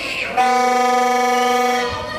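A horn sounding one loud, steady note for about a second and a half, starting about half a second in and cutting off just before the end.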